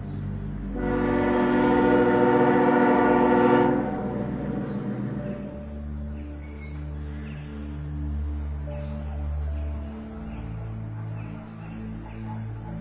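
A train's whistle sounds one long, steady blast of about three seconds, starting about a second in, over background music of low sustained chords.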